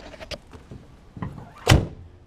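Chevy Van G30 cab door slammed shut with one loud, solid thunk about three-quarters of the way through, after a few light knocks and clicks.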